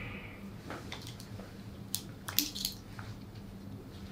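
A stethoscope being handled and readied: a few sharp clicks and rustles from about two seconds in, the loudest near the middle, over a steady low room hum.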